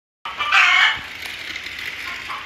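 A domestic chicken gives one loud squawk about half a second in, followed by quieter, steady background sound.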